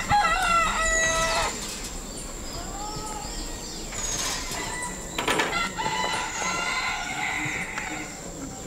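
A rooster crowing: one long stepped crow in the first second and a half, with shorter bird calls after it. A steady high-pitched tone runs behind, and there is a brief clatter about five seconds in.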